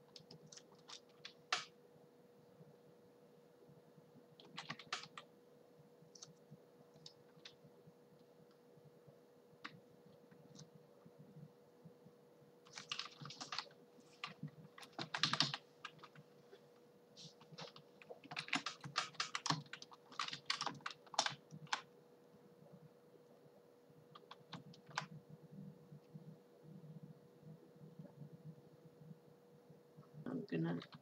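Computer keyboard keys pressed in scattered clicks and short bursts, busiest in the middle of the stretch, over a faint steady hum.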